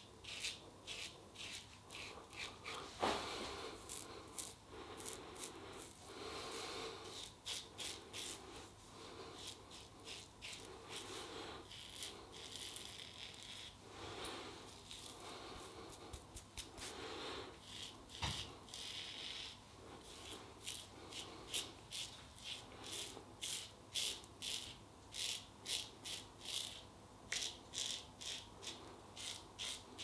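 Gillette Superspeed double-edge safety razor with a new Polsilver Super Iridium blade scraping through stubble and lather in short repeated strokes. The strokes come in quick runs, and near the end they fall into a steady rhythm of about two a second.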